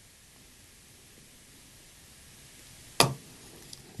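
Quiet room tone, then a single sharp click about three seconds in from handling the float of a magnetic levitation toy.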